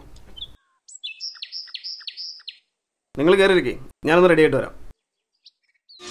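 A quick run of about six short, high, bird-like chirps, followed by a voice calling out twice, each call long and drawn out.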